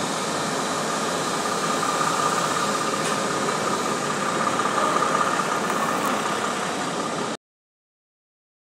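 Diesel truck engine idling steadily, heard as an even running noise with a steady high whine, cutting off suddenly about seven seconds in.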